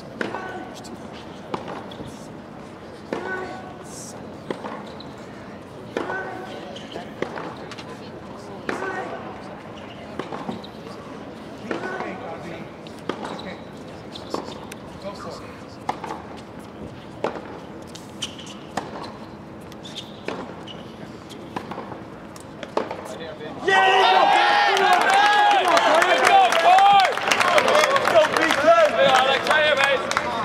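Tennis ball struck back and forth with rackets in a groundstroke rally, a sharp pock about every second and a half. About 24 seconds in, loud voices break in and carry on to the end, much louder than the hits.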